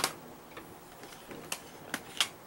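A few sharp plastic clicks from CD jewel cases being handled: one at the start, then two close together about a second and a half in.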